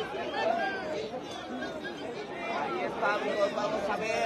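Crowd of spectators chattering, many voices talking over one another at once with no single voice standing out.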